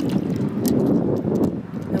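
Wind buffeting the microphone in a steady low rumble over shallow seawater, with a few light clicks of shells being handled in the first second or so.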